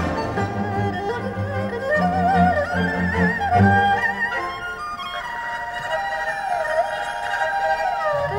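Erhu solo playing a melody with wide vibrato over a Chinese traditional orchestra with a low pulsing accompaniment. About five seconds in, the erhu settles on a long high held note.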